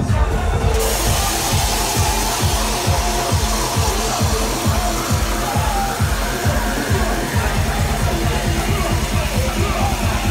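Loud live electronic dance music over a club sound system, a fast, regular kick-drum beat with an MC's voice on the microphone over it. Near the end the separate kicks give way to a continuous low bass.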